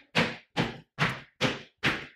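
Sneakered feet landing on a floor in quick, rebounding jumps, one after another: about two and a half landings a second, five within the stretch, each a sharp thud that fades quickly.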